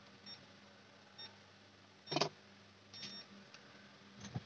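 ANENG M118A digital multimeter giving short high beeps, about four times, one a little longer near the end, as its buttons are pressed while it is set up to check a DC rail for a short. A sharp click a little after two seconds is the loudest sound, over a steady low hum.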